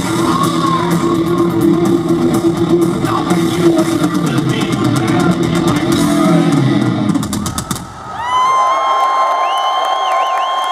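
Heavy metal band playing live with distorted guitars and drums, ending in a quick drum run that stops about eight seconds in. A long, steady high tone then rings on to the end.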